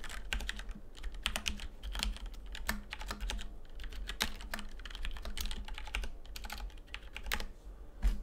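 Typing on a computer keyboard: a run of irregular key clicks as a short arithmetic expression is keyed in.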